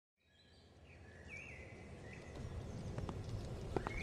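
Outdoor ambience fading in: a bird chirps several times over a low, growing rumble, and a few light clicks come near the end.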